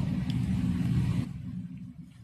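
A low rumble that fades away over the two seconds.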